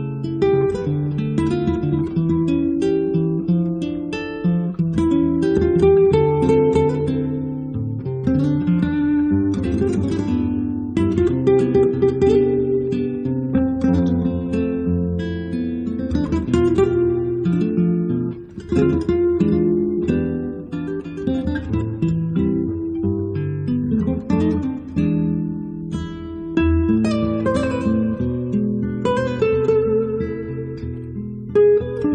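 Recorded acoustic guitar music: several acoustic guitars playing together in a busy stream of quick plucked notes.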